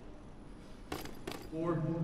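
Quiet arena room tone broken by two sharp clicks about a second in, then a ring announcer's voice begins near the end, leading into the announcement of the winner.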